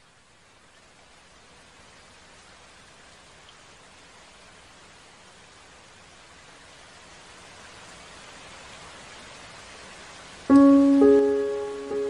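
Meditative background music: a soft rain-like hiss fades in and slowly swells, then near the end two sustained, ringing instrument notes strike in about half a second apart and are the loudest part.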